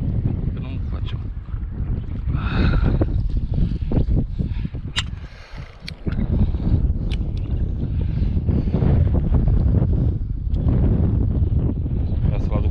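Strong wind buffeting the microphone: a heavy low rumble that eases briefly about five seconds in, with a few sharp clicks around five and seven seconds in.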